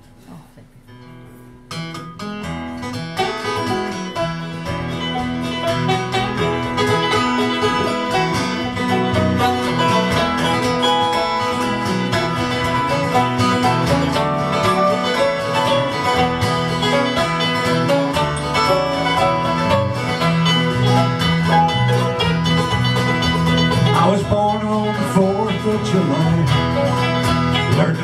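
Acoustic string trio of banjo, mandolin and acoustic guitar playing an instrumental introduction together. The playing starts about two seconds in, builds over the next couple of seconds and then runs on at a steady level.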